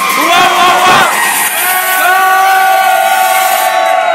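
A group of young people whooping in short rising-and-falling shouts, then holding one long loud yell together.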